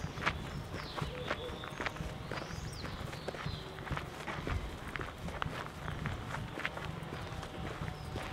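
Footsteps crunching on a dirt and gravel path, about two steps a second, over a low rumble, with a few faint high bird chirps.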